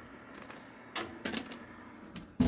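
A short cluster of sharp metallic clicks and rattles about a second in, from a countertop convection oven's wire rack and glass door being handled as the hot tumbler is lifted out and the door pushed shut.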